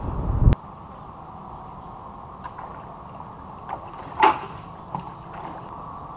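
Handling noises from a plastic bucket being picked up: a few light knocks and clicks, and one louder creaking clatter about four seconds in, over a steady background hum. At the start a low rumble cuts off with a sharp click half a second in.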